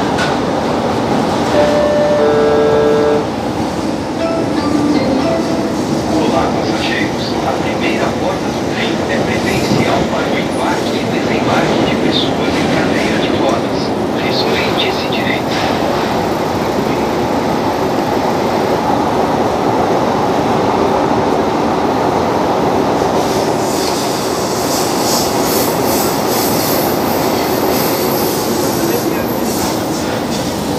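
An electric multiple-unit train running through a tunnel, heard from inside the car: a steady loud rumble and hiss of wheels on rail, with scattered clicks from the track. A few short electronic tones sound about two seconds in, and the high hiss grows stronger in the last quarter.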